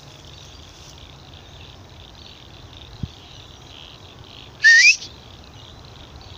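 A single sharp rising whistle, about half a second long, about three-quarters of the way through, of the kind used to call a dog back. It sounds over a faint steady high-pitched background, with one small click midway.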